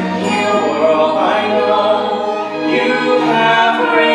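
A stage-musical cast singing together as a choir, holding long notes over musical accompaniment.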